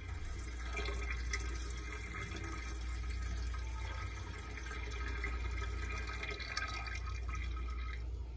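Yeast starter poured from a glass flask in a steady stream into wort in a stainless steel fermenter, with liquid splashing into liquid; the pour stops near the end.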